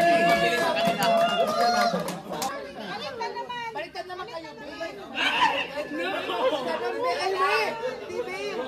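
Several people talking and calling out over each other in lively group chatter, with one voice holding a long drawn-out call near the start.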